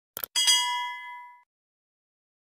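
Subscribe-button animation sound effect: a quick double mouse click, then a bright bell ding that rings for about a second and fades out.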